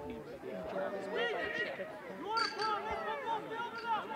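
Several high voices, children's and adults', talking and calling out over one another across the field, with no one voice clear.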